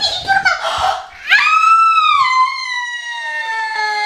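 A woman's long, high-pitched scream on finding gum stuck in her hair: it breaks out about a second in, after a few short cries, and is held, slowly falling in pitch.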